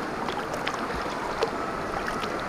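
River water rushing and churning over rocks right beside the microphone: a steady, even rush of current.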